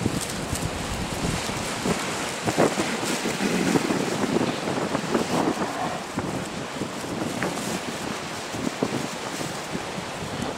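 Wind buffeting the camera's microphone in uneven gusts, stronger in the middle, over the wash of waves on choppy sea.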